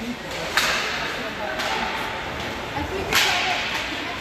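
Ice hockey play on the rink: sharp cracks and scrapes of hockey sticks and skate blades on the ice. There are two loud ones, about half a second in and near the end, and a softer one between them, over faint voices of spectators.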